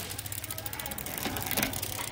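Bicycle drivetrain spinning: the chain runs over a Shimano rear cassette and derailleur with a fast, even ticking. The gears are working smoothly, which is judged very good.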